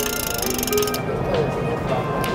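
Small deep-section carbon bicycle wheel spun by hand, its hub giving a fast, even ratchet clicking that stops about a second in, over the steady din of a busy show hall.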